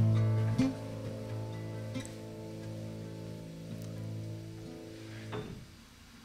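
Final chord of a song on piano and nylon-string acoustic guitar ringing out, with a couple of last notes struck in the first two seconds, then slowly dying away.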